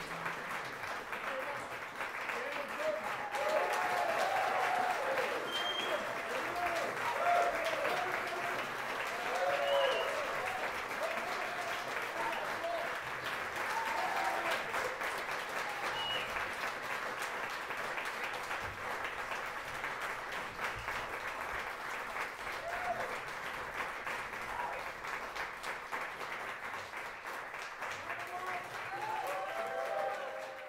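Audience applauding at the end of a live jazz piece, with voices calling out among the clapping. The applause is strongest in the first third and then slowly thins out.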